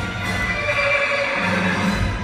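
A recorded horse whinny played over the show's loudspeakers for the costumed horse Maximus, with music underneath.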